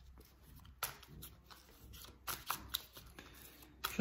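A tarot deck being shuffled by hand: faint, irregular snaps and rustles of the cards.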